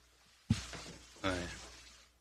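A single sharp knock about half a second in, with a short ringing tail that dies away, followed by a man saying "ne" (yes).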